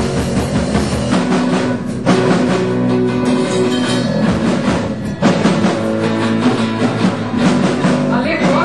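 Live rock band playing an instrumental passage on bass guitar, guitar and drum kit, with no singing.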